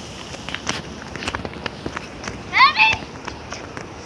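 Light scattered clicks and taps, like footsteps and handling of the phone, with a brief high-pitched child's cry about two and a half seconds in.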